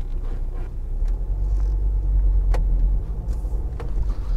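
Car cabin noise: low engine and road rumble as the car moves slowly through congested traffic, a little louder through the middle. A single sharp click about two and a half seconds in.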